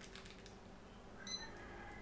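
Handheld barcode scanner giving one short, high beep a little past halfway as it reads a product's barcode. The beep marks a successful read after the barcode proved hard to scan.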